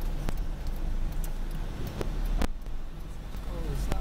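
Inside the cabin of a Honda car driving slowly: a steady low engine and road rumble, with two sharp clicks, one near the start and one past the middle.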